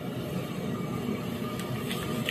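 Steady rushing noise of a high-pressure LPG burner under a large aluminium pot of almond milk, with a couple of faint ladle clicks against the pot near the end.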